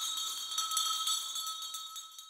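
A high, shimmering bell-like ringing, like jingling chimes, held steady and then fading away near the end.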